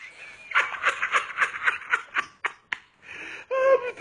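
A person laughing in a quick run of short, evenly spaced 'ha' sounds, about four to five a second, that stops a little before three seconds in; a brief pitched vocal sound follows near the end.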